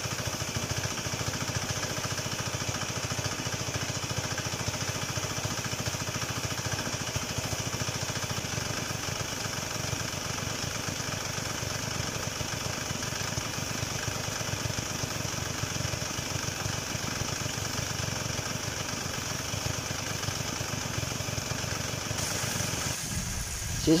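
Steady hum of a small motor with a low drone, over the rush of water from a hose washing down a flooded concrete pen floor; it cuts off about a second before the end.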